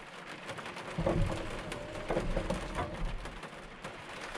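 Rain falling on an excavator cab's roof and windshield, a dense spatter of drops. A low rumble runs underneath from about one second in until shortly before the end.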